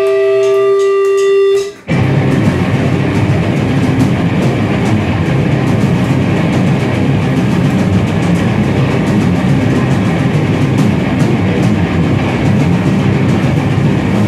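Live metal band: a single held guitar note rings for about a second and a half and cuts off abruptly, then the full band crashes in with a dense, loud wall of distorted guitar and drums that runs on without a break.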